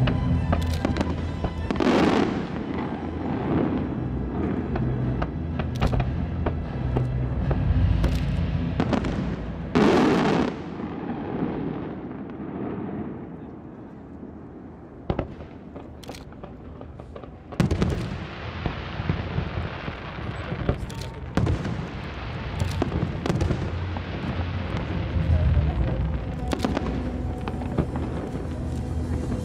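Aerial firework shells bursting in a string of sharp bangs and crackles, with the loudest reports about two seconds in, around ten seconds and just past the middle, and a quieter lull in between. Music plays underneath throughout.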